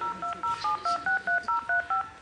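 Touch-tone telephone keypad dialing a number: a rapid run of about a dozen short two-note key beeps, about five a second, right after the dial tone cuts off.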